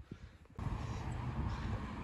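Steady outdoor background hiss that begins about half a second in, after a brief quieter moment.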